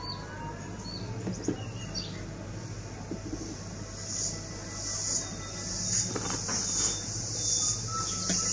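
Insects buzzing in a high, pulsing drone that swells from about halfway through, with a few short bird chirps in the first couple of seconds.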